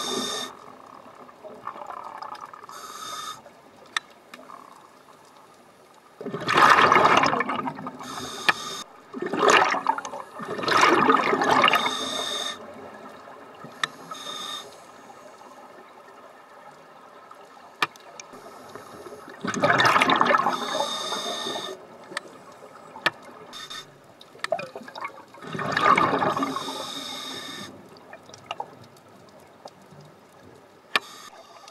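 A scuba diver breathing through a regulator, heard underwater. Exhaled bubbles burst out in loud rushes every several seconds, with quieter hiss and scattered faint clicks between breaths.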